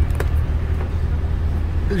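Steady low engine and road rumble of a car being driven, heard from inside the cabin, with a few faint clicks near the start.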